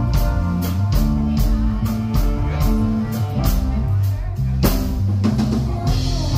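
Live reggae band playing an instrumental passage: a strong bass line under a steady drum-kit beat.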